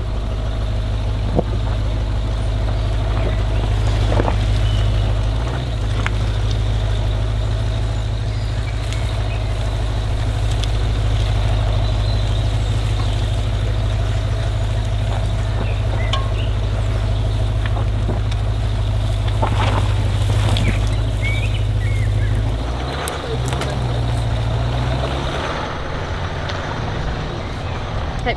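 Large SUV driving slowly along a muddy, rutted lane, heard from outside the open window: a steady low engine and tyre rumble with scattered short crackles and knocks from the tyres on mud and twigs. The rumble turns uneven a few seconds before the end.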